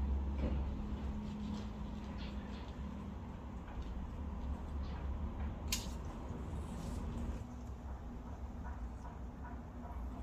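Hand pruning shears snipping through an olive twig: one sharp click of the blades closing about six seconds in, with faint rustling of leaves and small ticks of the shears being worked into the branches. A low steady hum runs underneath.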